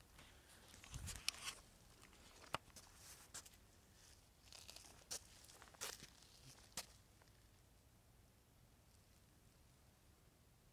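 Near silence, with a few faint scattered clicks and crunches during the first seven seconds.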